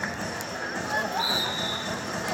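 High shouted voices of players and onlookers calling out during a kabaddi raid. About a second in, a short, thin, high steady tone sounds.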